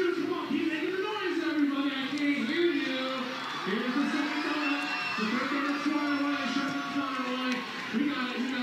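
A man talking continuously through a stadium public-address microphone, with some crowd noise behind.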